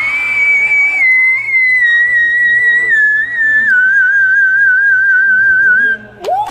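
A boy singer's voice in whistle register: a sung note slides up into one long, very high, pure whistle-like note, held and then stepped down in pitch a few times, with a slight waver near the end.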